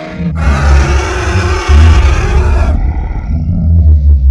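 A loud rushing noise over a deep rumble. The hiss cuts off abruptly about two-thirds of the way in, while the rumble carries on.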